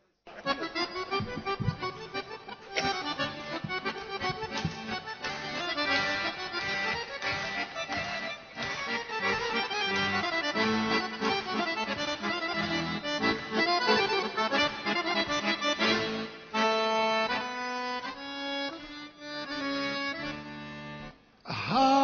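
Accordion playing a sevdalinka melody in quick runs of notes, turning to slower held chords about sixteen seconds in, with a brief break just before the end.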